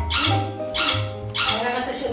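Voices singing in rhythm over music with a steady pulsing beat, each sung phrase about half a second apart.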